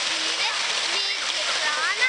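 Fountain water jets splashing steadily into the basin, a constant rushing hiss, with a child's voice speaking over it.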